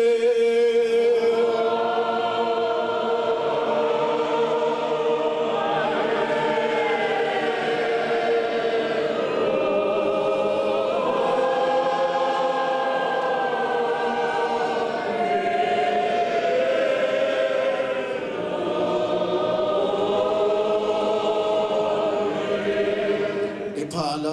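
Many voices singing together in a slow, solemn hymn with long held notes that shift slowly in pitch, sung without a break.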